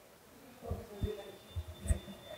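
Handling noise from a handheld interview microphone being moved: a few faint, low thumps over about a second, with a faint steady high tone behind.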